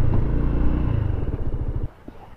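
Honda SH150i scooter's single-cylinder four-stroke engine running at low speed, then dropping toward idle so that its separate firing beats can be heard. The sound stops abruptly near the end.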